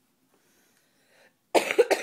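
A person coughing twice in quick succession, starting about one and a half seconds in.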